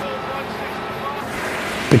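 Steady outdoor background noise of water and wind, with a faint hum underneath.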